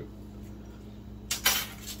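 A metal-bladed spinnerbait is set down among plastic-packaged lures on a glass tabletop, giving a brief clatter and rustle about a second and a half in.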